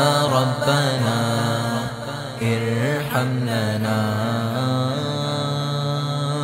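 Devotional vocal music: layered male voices singing a wordless melodic interlude over a steady low sustained drone, between verses of an Urdu kalam.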